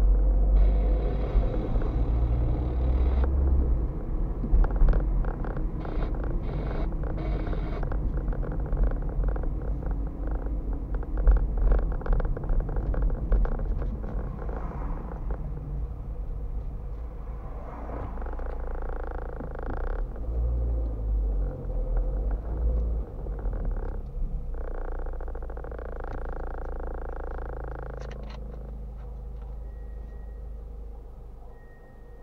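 Road and engine rumble inside a moving car, with many small knocks and rattles from the cabin over the road surface. It grows quieter near the end as the car slows to a stop in traffic.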